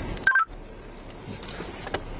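A short electronic beep of two or three quick notes about a quarter second in, with all other sound cutting out briefly around it, typical of a police radio's push-to-talk tone. Steady vehicle cabin noise runs underneath.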